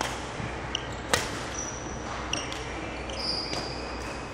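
A badminton racket strikes a shuttlecock with one sharp crack about a second in. Sneakers squeak briefly several times on the wooden court floor, with a few lighter taps.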